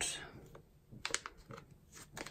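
A few faint clicks and light handling noise from a resealable plastic pouch of highlighters held in the hands.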